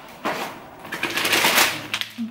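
Plastic packaging rustling as a bag of bread rolls is pulled out of a reusable shopping bag, loudest in the second half.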